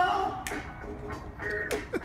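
Karaoke backing track playing through an outdoor speaker, with a man's held sung note trailing off about half a second in.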